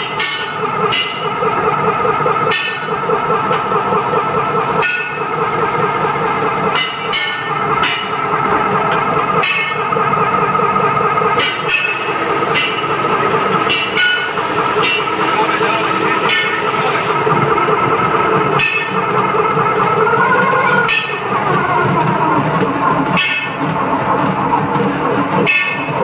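Automatic batasa (sugar-drop candy) machine running. A steady mechanical whirr is punctuated by sharp clacks about once a second, as the machine works through its depositing cycle.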